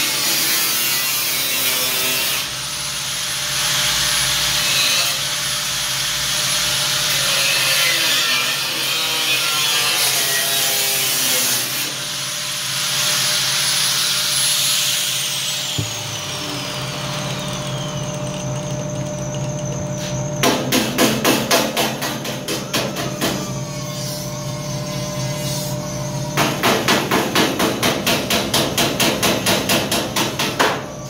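Angle grinder cutting the steel sill panel of a van, running with a high whine in two stretches and then winding down about fifteen seconds in. Later come two runs of fast, regular strikes on metal, about five a second, starting about twenty and about twenty-six seconds in.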